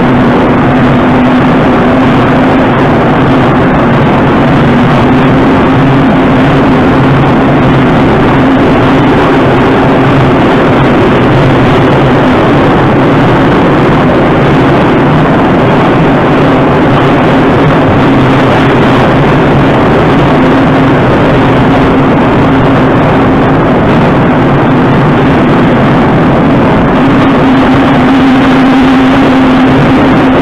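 Moscow Metro train running at speed, heard inside the car: a loud, steady rumble of the wheels on the rails with a constant hum running through it.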